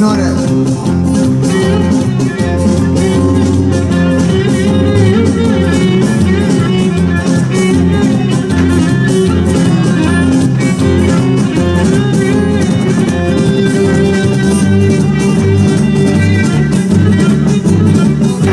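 Amplified live band music led by plucked string instruments over a steady, pulsing bass, played at full volume.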